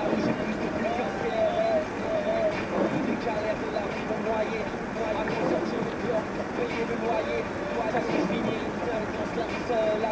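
Steady car cabin noise while driving over a snow-packed street, with people's voices talking over it.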